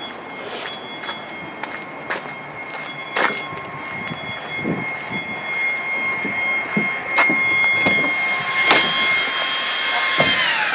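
Vacuum cleaner motor running with a steady high whine, then switched off right at the end, its pitch falling as the motor spins down. Scattered clicks and knocks of footsteps sound over it.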